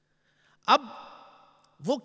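Speech only: after a brief silence, a man lecturing in Urdu says two short words.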